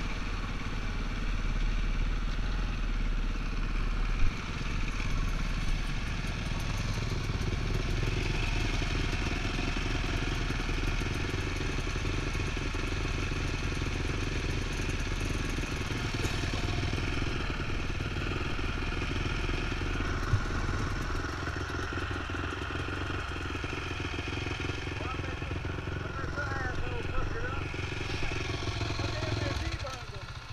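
Dirt bike engine running steadily while being ridden, heard from the rider's own bike. Its pitch shifts a couple of times as speed changes.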